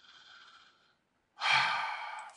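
A man breathes in faintly, then lets out a loud, long sigh about one and a half seconds in.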